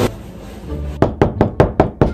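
A rapid run of about six loud knocks, as on a door, packed into about a second and starting halfway through.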